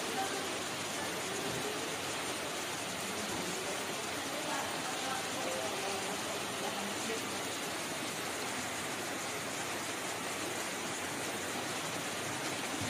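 Steady rain falling on a garden, hissing on wet paving, grass and leaves.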